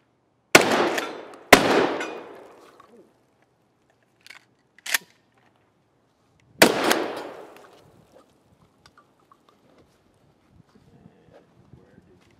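Pump-action shotgun fired three times: two shots a second apart, then two short clicks as it is reloaded, then a third shot. Each shot echoes briefly.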